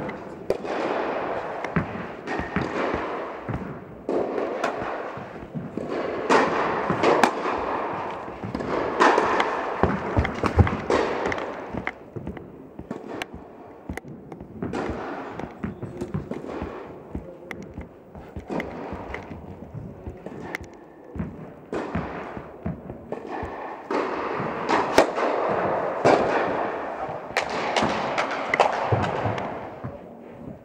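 Tennis balls being struck by rackets and bouncing, sharp hits repeated throughout and echoing in a large indoor tennis hall, with people's voices in the background.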